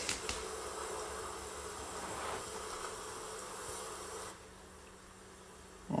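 Quiet, steady ambient drone from the music video's cinematic soundtrack: an even hiss with a low, faint hum running under it. It drops to a lower level about four seconds in.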